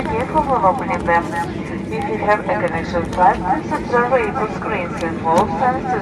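Voices talking over the steady noise of an airliner cabin as the plane moves along the airfield after landing.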